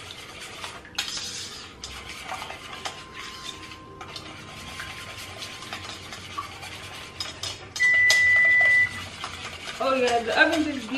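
Whisk scraping and clicking quickly against a stainless steel mixing bowl as wet cake ingredients are stirred. Near the end a single loud, steady electronic beep lasts about a second.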